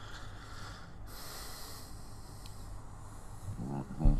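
A person's breath into a close microphone over a video call: a soft breathy rush of noise lasting about two seconds, over a steady low hum. A brief voiced sound starts near the end.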